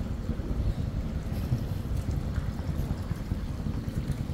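Wind buffeting a phone's microphone outdoors: a low, unsteady rumble with no clear tone or rhythm.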